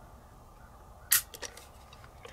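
One sharp metallic click about a second in, followed by a few lighter clicks: the Kimber Micro 9's hammer dropping as the trigger breaks under a trigger-pull gauge, dry-firing the unloaded pistol.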